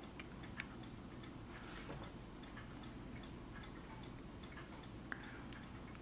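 Quiet room tone with faint regular ticking and a few light clicks as small plastic model-kit parts (gun barrels and turret pieces) are handled and pressed together.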